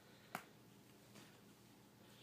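One sharp click about a third of a second in, as hollow plastic ball-pit balls knock together in a baby's hands, with a fainter tap later; otherwise near quiet.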